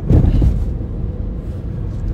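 Low rumble of a car, with a louder surge of rumble in the first half second settling into a steady low drone.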